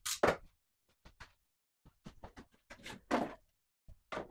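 Knocks and scrapes of 3D-printed PLA bumper sections being handled and pressed together: a string of short, sudden sounds, the loudest near the start and about three seconds in.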